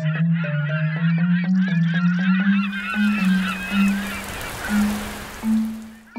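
Animation soundtrack: a low instrument plays held notes that climb step by step, under a busy overlapping chatter of short wavering calls. About halfway in, a rain-like hiss comes in as rain falls on screen, then fades away near the end.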